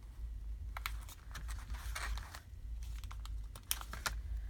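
Paper handling at a desk: scattered light taps and clicks from fingers pressing a cardstock alphabet sticker onto a journal page, with a brief rustle about halfway through as the paper is handled and the next letter is peeled from its sticker sheet.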